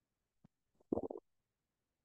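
A faint click, then a short, choppy low throat noise from a man about a second in, picked up by a close headset microphone.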